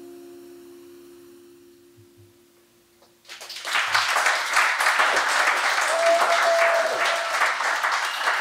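An acoustic guitar's last chord ringing out and fading away over about three seconds, then audience applause breaking out and carrying on.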